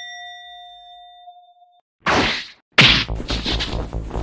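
A bright, bell-like ding sound effect, struck once, rings down over about two seconds as a title card transition. A short noisy burst follows, and a loud, full sound starts near three seconds in.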